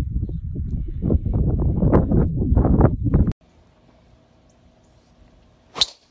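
A loud, low rumble of wind buffeting the microphone that cuts off abruptly after about three seconds. Near the end comes one sharp crack: a driver's clubhead striking a golf ball at long-drive swing speed.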